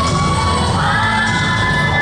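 Group of voices shouting a long held cry over rhythmic dance music. The cry steps up in pitch a little under a second in.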